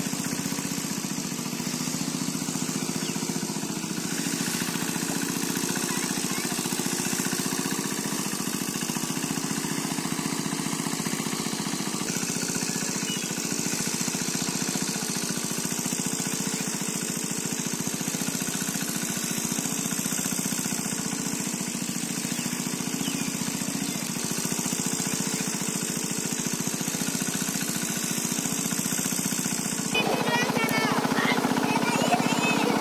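An engine running steadily at an even speed, with no change in pitch or loudness.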